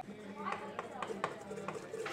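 Flat mixer beater stirring cream and Nutella by hand in a stainless steel bowl, knocking lightly against the bowl with four or so sharp clicks.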